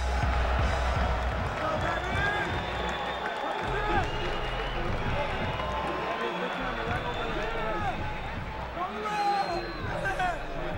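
Boxing arena crowd noise after a decision: many overlapping voices and shouts, with music playing underneath.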